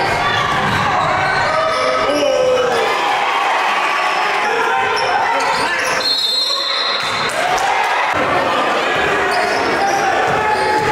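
Basketball dribbled on a hardwood gym floor, with spectators' voices echoing through the gym hall.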